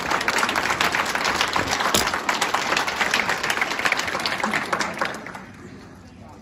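Audience applauding, the clapping dying away in the last second.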